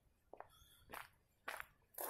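Faint footsteps of a person walking, about two steps a second, in near silence.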